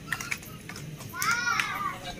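A child's voice calls out once, high-pitched, rising and falling, for under a second, after a few light clicks.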